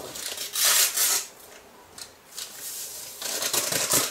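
Irregular rustling and scraping of ingredients being handled and added to a pot on a kitchen counter, in short noisy bursts, loudest about a second in and again near the end.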